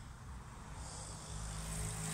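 A motor vehicle approaching, a low engine hum that grows louder from about a second in.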